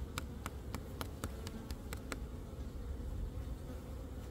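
Korean native honeybees (Asian honeybees) humming steadily as a crowd over the opened comb of a wooden box hive. A quick run of light, sharp clicks sounds through the first two seconds, then only the hum remains.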